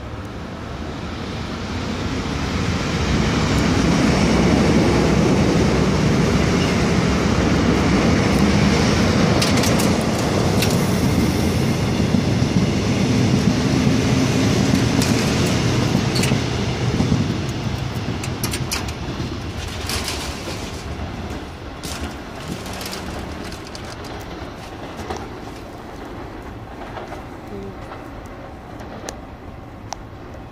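An electric commuter train passing close by. Its running noise builds over the first few seconds, holds loud for about a dozen seconds, then fades away. Sharp clicks from the wheels come through as the cars go by.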